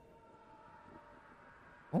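Near silence with a faint steady background hum holding a couple of thin tones, broken right at the end by a man's voice.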